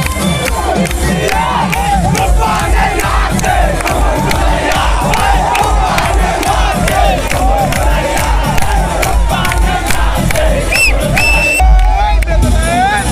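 A large crowd shouting and cheering over loud live stage music with a steady beat.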